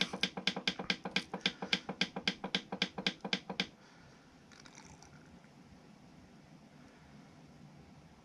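AC Infinity fan controller's button beeping in a rapid, even run, about seven short beeps a second, as the held up-button scrolls the temperature setting upward. The run stops a little under four seconds in, leaving faint room tone.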